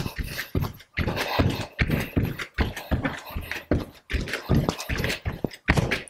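Bare feet thudding rhythmically on a yoga mat over a wooden floor as they jump from side to side in a plank during mountain climbers, about three or four landings a second.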